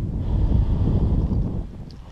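Wind buffeting the microphone: a low rumble that eases off about a second and a half in.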